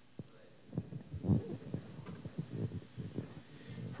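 Handling noise on a handheld microphone as it is passed from one person to another: after a moment of near silence, a string of irregular low thumps and rustles.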